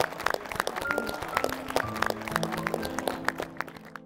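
Scattered hand clapping from a small group over background music with long held notes.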